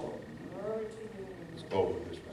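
Indistinct voices: short, unclear bits of speech with low room hum between them.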